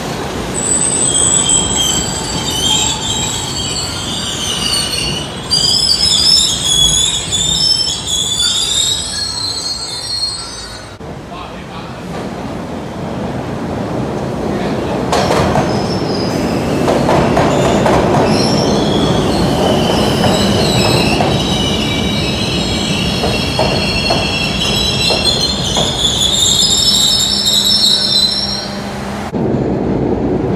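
MBTA Orange Line subway train moving through an underground station, its steel wheels squealing high-pitched over a steady rumble. The squeal comes in two long stretches: the first fades about ten seconds in, and the second starts about twenty seconds in and lasts until near the end.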